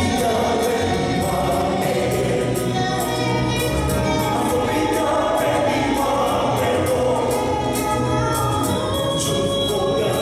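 A mixed group of men and women singing a gospel song together in harmony through microphones, over a steady beat.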